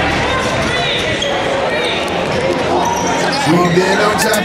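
Live game sound of a basketball game in a gymnasium: a basketball being dribbled on the hardwood court, a few sneaker squeaks about a second in, and players' and spectators' voices.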